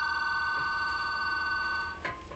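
A landline telephone ringing with an electronic warbling ring: one ring lasting about two seconds, signalling an incoming call.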